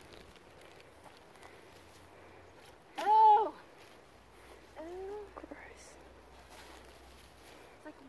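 A woman's short, loud vocal exclamation of disgust, a rising-then-falling "ugh"-like cry, about three seconds in, followed by a quieter second one about five seconds in, over the stinking rubbish she is picking up.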